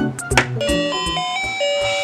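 Baby walker's electronic music toy tray playing a chiming tune: a run of bright held notes stepping up and down over a low accompaniment, starting with a click as a button is pressed.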